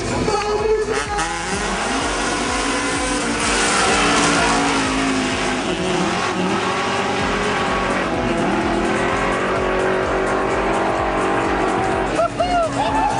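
Drag-race cars launching and accelerating hard down the strip, engines climbing in pitch with a couple of drops and re-rises as they shift gears. There is a burst of tyre and exhaust hiss a few seconds in.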